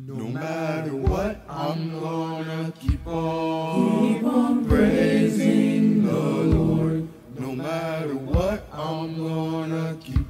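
Youth gospel choir singing in multi-part harmony, holding long chords that change every couple of seconds, with a short low thump at each change, about every two seconds.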